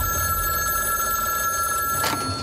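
Payphone in a street phone booth ringing: one long, steady ring that starts suddenly and cuts off abruptly after about two seconds.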